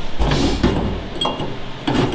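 Bent metal tubes being handled on a car's bare sheet-metal floor pan: a scraping, rumbling shuffle early, a short ringing clink past the middle and a sharp knock near the end.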